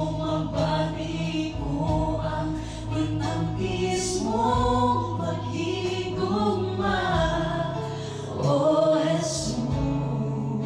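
A small mixed vocal group of women and a man singing a gospel song together in harmony through microphones, over a steady keyboard accompaniment.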